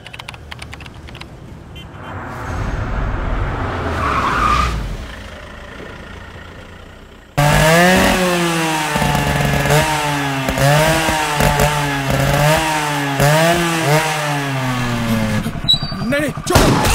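A low rumble for the first seven seconds, then a motorcycle engine starts up loudly and abruptly and is revved in repeated blips, its pitch rising and falling with each twist of the throttle and slowly sinking overall.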